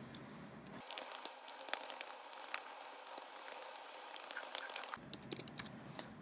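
Fast typing on a computer keyboard: a quick, faint run of light key clicks that starts about a second in and stops about a second before the end.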